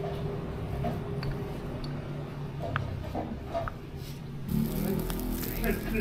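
A few light clinks of a spoon against a glass jar over background voices. Then, about four and a half seconds in, chicken satay skewers start sizzling over a charcoal grill with a steady hiss.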